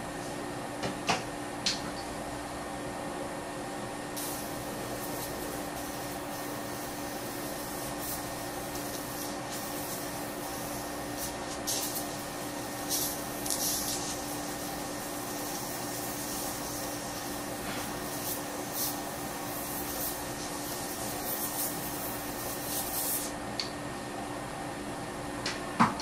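Light, intermittent scraping of a thin metal dental hand instrument against the walls of an access cavity in a plastic typodont tooth, smoothing the walls and clearing wax, over a steady background hum.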